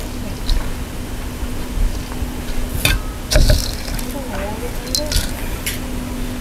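A metal ladle clinks against a steel cooking pot a few times, the sharpest knocks about halfway through, over a steady low hum.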